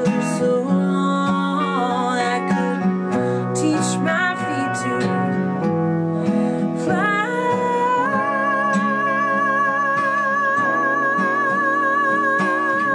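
A woman singing over acoustic guitar and electric guitar accompaniment; about eight seconds in, her voice slides up into one long held note with vibrato.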